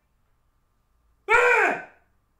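Rubber chicken toy squeezed once about a second in, giving one loud squawk whose pitch rises and falls back, lasting about half a second.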